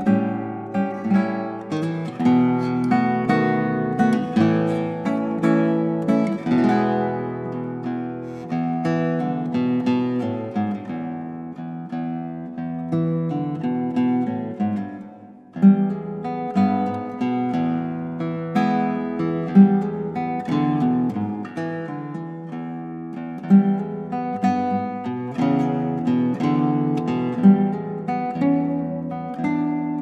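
Solo nylon-string classical guitar fingerpicking a blues, with bass notes under a melody. The playing breaks off briefly about halfway through and starts again with a sharp accented note.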